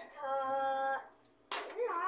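A short held sung note, then about one and a half seconds in a single sharp pop as a knife tip punctures plastic wrap stretched over a halved spaghetti squash, venting it for the microwave. A brief voiced sound follows near the end.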